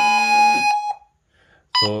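Serene Innovations CentralAlert alert receivers sounding their electronic doorbell chime, a loud steady tone that steps in pitch and cuts off a little under a second in. It is the signal that the paired wireless doorbell button has been pressed.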